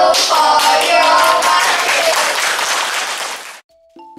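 Children's voices in unison at the start as the cast bows, then applause with voices over it, which cuts off abruptly shortly before the end.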